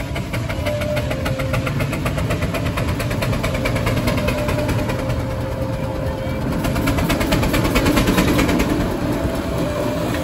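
J&H McLaren steam traction engine running under way with a rapid, even beat, getting louder as it comes near and loudest about eight seconds in.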